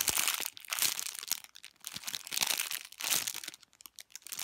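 Clear plastic packaging bag crinkling in several bursts as hands squeeze a soft squishy toy sealed inside it, dying away near the end.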